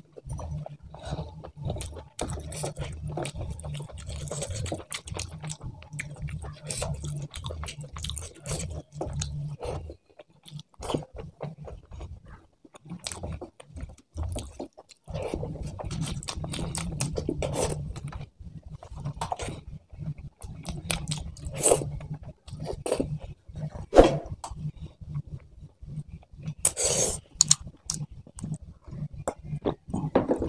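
Close-miked eating sounds: chewing and mouth clicks while eating rice mixed with curry, with fingers squishing and mixing the wet rice on a steel tray. The sounds are quieter for a few seconds in the middle, and there are a few sharper clicks in the second half.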